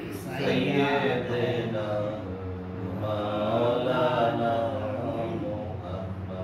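A man's voice chanting an Islamic devotional recitation in praise of the Prophet, unaccompanied, in two long melodic phrases with drawn-out, wavering notes.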